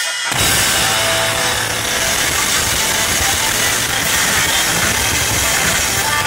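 Live blues-rock band playing loud: distorted electric guitar through a Blackstar amp, with bass and drums. The low end drops out for a moment at the very start, then the full band plays on steadily.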